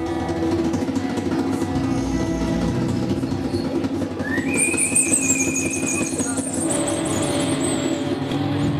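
Live band playing loud, droning experimental rock with electric guitar, bass and keyboard. About four seconds in, a whining tone slides up and holds, with a shrill whistling tone above it until near the end.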